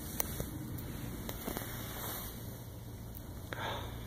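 Faint rustling and a few light clicks over a steady low hum: handling noise while a cat is being stroked.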